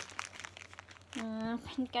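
Crinkling of a plastic wipes pack and rustling of a dry paper sheet being pulled out and unfolded, in the first second, before a woman starts speaking. The sheets are plain dry tissue paper, not wet wipes.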